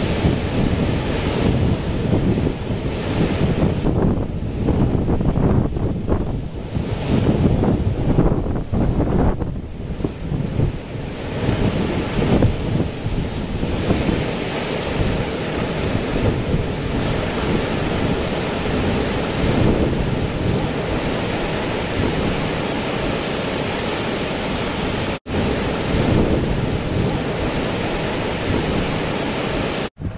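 Strong wind buffeting the microphone, gusting unevenly for the first dozen seconds and then blowing more steadily, with a sudden brief break about 25 seconds in.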